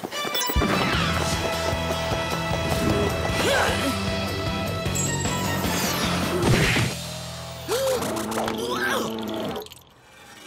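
Cartoon action-scene music score with fight sound effects laid over it, including a crashing hit about six and a half seconds in. The music stops shortly before the end.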